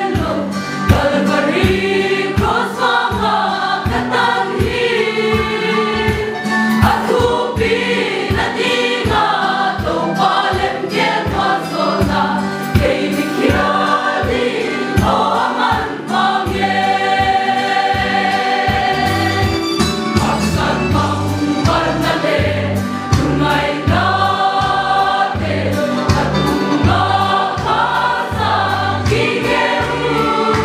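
Mixed choir of women and men singing a gospel hymn together, many voices sustaining and moving between held notes.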